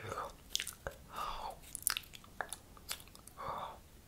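Close-miked ASMR mouth sounds: sharp wet clicks and smacks, with three short breathy hushes.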